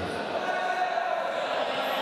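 Echoing sports-hall din at a wrestling bout: indistinct voices of coaches and spectators, with occasional dull thuds.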